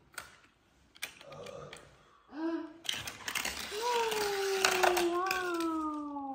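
Small die-cast toy car clattering and rattling down the plastic spiral ramp of a toy parking garage, with sharp clicks. Over it a child's voice holds one long vocal tone that slowly falls in pitch, starting about halfway through.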